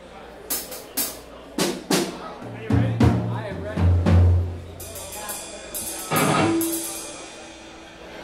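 Drum kit played in loose, scattered hits, as in a warm-up or soundcheck rather than a song: several sharp strikes in the first two seconds, then a few deep, held low notes and another loud hit a little after six seconds, with no steady rhythm.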